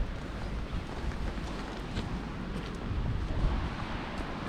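Wind blowing across the camera's microphone: a steady low rumbling noise that swells slightly now and then.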